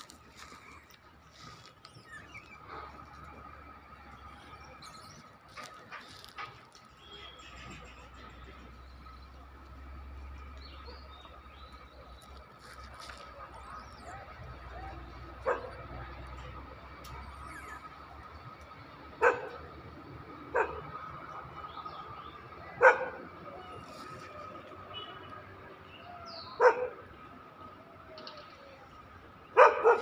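A dog barking: single sharp barks every few seconds from about halfway through, ending in a quick run of barks near the end.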